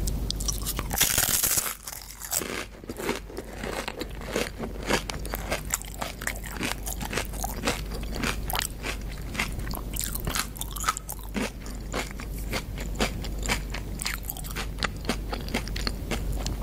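A person biting and chewing tortilla chips with guacamole: many sharp crunches in quick succession, with a louder crunching bite about a second in.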